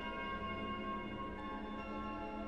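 Soft background music of held chords that change a couple of times.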